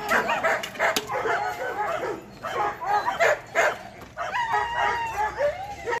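Dogs barking and yipping in repeated, overlapping calls, with brief lulls about two and four seconds in.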